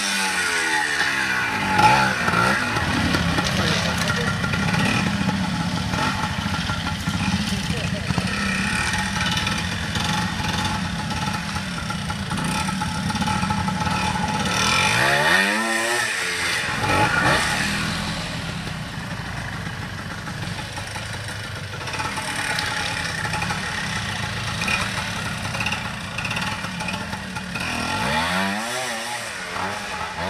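Classic trials motorcycle engine working at low revs as it climbs a steep wooded section, with short throttle blips that rise and fall in pitch about a second in, about halfway through and near the end.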